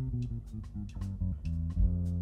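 Electric bass playing a line of low, held notes that change every half second or so in a jazz trio, with light cymbal taps from a drum kit.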